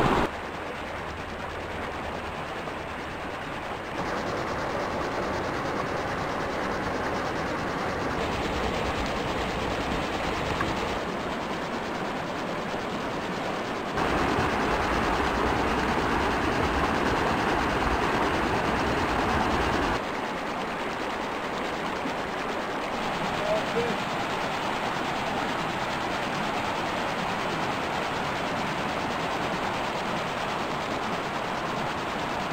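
Rushing water of a small rocky mountain creek running over boulders, a steady rough rush that changes level abruptly every few seconds, loudest for several seconds about halfway through.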